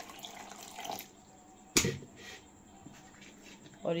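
Water poured from a plastic jug into a steel mixer-grinder jar for about a second, splashing onto the ground tamarind pulp inside. A single sharp knock follows near the middle.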